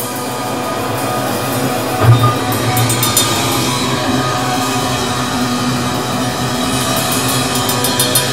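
Live hardcore/crust metal band playing: distorted guitar and bass over drums, recorded loud in the club room. A heavy low accent hits about two seconds in, and the band plays on steadily.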